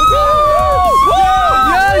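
Several people shouting and cheering excitedly, one voice holding a long high yell.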